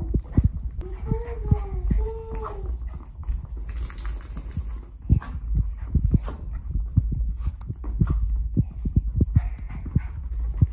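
A small dog whimpering twice, two short rising-and-falling whines about a second in, over footsteps and the patter of its paws across the floor. A brief hiss comes around four seconds.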